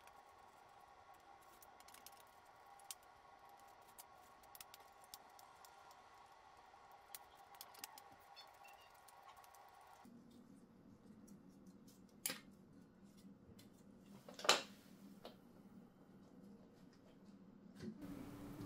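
Faint small clicks and scrapes of a hand screwdriver forcing screws through unthreaded holes in a 3D-printed plastic holder on a metal plate, with a sharper click about twelve seconds in and a louder knock about two seconds later as the parts are handled.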